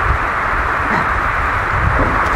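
Steady rush of shallow water flowing over a concrete spillway lip in a canal, with a low rumble underneath.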